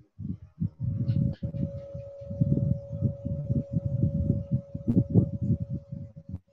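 Irregular low rumbling noise with a steady hum coming in about a second in. It is heard through a video call, most likely from a participant's open microphone.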